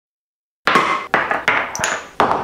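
Glass spice jars and a bottle set down one after another on a stone countertop: four sharp knocks with light clinks, starting suddenly after a moment of silence.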